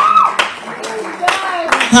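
A few scattered, irregular hand claps from the congregation, with the tail of a rising exclaimed voice at the very start and a brief bit of voice about a second and a half in.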